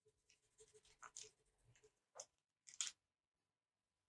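Near silence with faint scratches and soft taps from pastel drawing tools on paper, a few short strokes about a second, two seconds and three seconds in.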